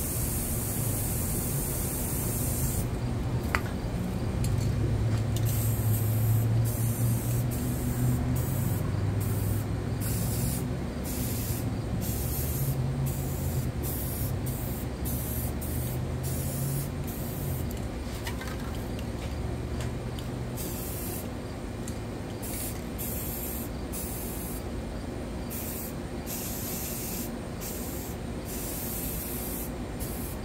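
Two aerosol spray-paint cans hissing as paint is sprayed onto a water surface, steady at first and then in many short bursts with brief breaks. A low drone sits underneath during about the first half.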